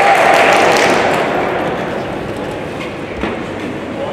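Crowd noise in a boxing hall, a mass of shouting and voices that is loud for about the first second and then dies down. A single short thud comes near the end.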